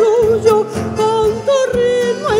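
Chamamé song played live: a woman sings long held notes with vibrato, accompanied by accordion, guitarrón bass lines and percussion.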